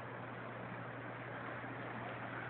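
Steady faint hiss with a constant low hum underneath; no distinct sound stands out.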